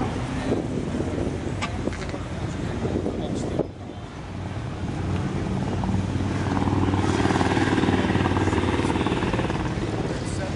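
A car engine running, getting louder about halfway through and easing off near the end, with people talking in the background.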